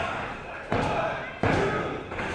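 Two hand slaps on the wrestling ring mat about 0.7 seconds apart: a referee's pin count, with a noisy crowd behind.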